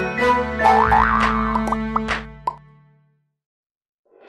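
Short cartoon-style intro jingle with rising pitch sweeps and quick popping effects, fading out about three seconds in and leaving silence.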